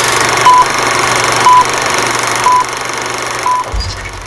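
Film-leader countdown sound effect: a steady film-projector whirr and clatter with a short beep once a second, one per number, four beeps in all, and a low thump near the end.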